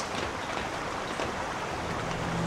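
Steady rush of a shallow stream flowing.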